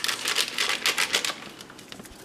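A paper Jell-O powder packet crinkling and crackling as it is shaken and squeezed to empty the gelatin powder into a plastic mixing bowl. There is a quick run of crackles in the first second or so, then it quietens.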